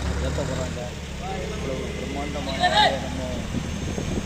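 People's voices talking in the background over a steady low engine hum, with one louder call about three seconds in.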